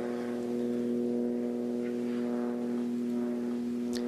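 A steady hum at a fixed low pitch, unchanging throughout.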